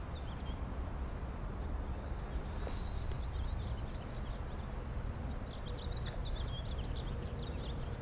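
Wind rumbling on the microphone in open air, an even, steady noise, with a few faint high chirps a little past the middle.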